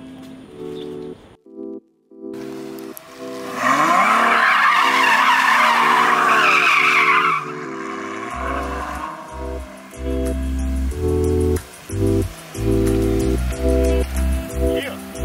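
Ferrari GTC4 Lusso sliding on wet asphalt: its tyres squeal loudly for about four seconds starting a few seconds in, with the engine revving beneath. Background music plays throughout, and a heavy bass beat comes in after the squeal.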